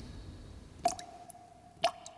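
Two water drops falling about a second apart, each a sharp plink followed by a ringing tone, over a faint fading trickle of water.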